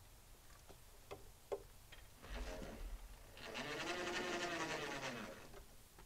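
Electric winch on a truck-mounted log crane running in two bursts, a short jog and then a pull of about two seconds, its motor whine rising and then falling in pitch as the cable takes up, after a few light clinks of cable and tongs. The owner says the winch has acted weird ever since it overheated and melted the plastic on its wiring.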